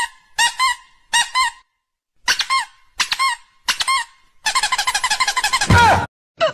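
Short high squeaks in quick pairs and triples, then a fast unbroken run of squeaks that ends in a loud falling glide near the end, like a cartoon squeak sound effect.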